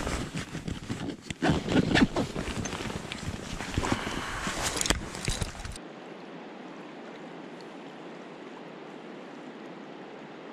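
Clothing rustling and footsteps on gravel, with scattered small knocks of handled gear. About six seconds in this cuts to a steady, even rush of flowing river water.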